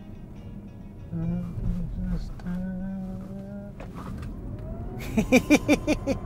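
A man's voice holding a few low notes, then a burst of loud laughter about five seconds in.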